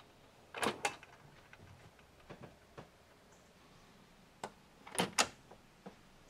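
A few light clicks and knocks from handling tools hung on a pegboard, in two close pairs about a second in and near the end, with fainter ticks between, over quiet room tone.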